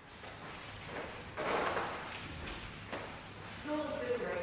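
A manual wheelchair rolling across a hard floor, with a scraping rattle about a second and a half in and two sharp clicks. A voice starts near the end.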